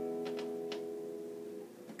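Acoustic guitar chord left ringing and slowly fading out, with a few faint clicks of fingers on the strings about half a second in.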